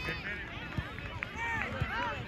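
Overlapping distant voices of spectators and players calling out across an outdoor soccer field, with a couple of soft low thumps about a second apart.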